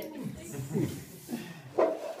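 Voices of several people around a table, with short, broken bits of talk and murmuring rather than clear words. A louder voice comes in near the end.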